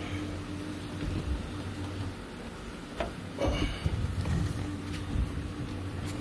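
Handling noise of an LED bulb being fitted into a car's fog-lamp housing: a few sharp clicks and some rubbing, about three seconds in and again near five seconds, over a steady low hum.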